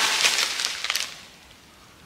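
Plastic packaging rustling and crinkling as sticker packs are handled, with a few small clicks, dying away about a second in.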